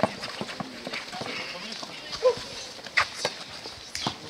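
A basketball being dribbled and sneakers moving on the court surface during a streetball game, heard as irregular knocks and steps. A player's short call about two seconds in is the loudest sound.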